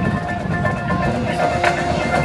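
Marching band opening its show with a few soft sustained notes and a struck percussion note about one and a half seconds in, over crowd chatter in the stands.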